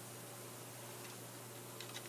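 Faint background: a steady low hum over a light hiss, with no distinct event apart from a couple of faint ticks near the end.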